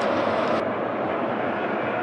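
Football stadium crowd: steady noise from the supporters in the stands, with no single event standing out.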